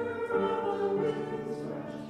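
A congregation singing a hymn in unison with piano accompaniment, holding long notes, with a brief drop between lines near the end.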